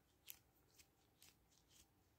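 Near silence broken by a few faint, short clicks of hand handling as a water-filled squishy ball is squeezed.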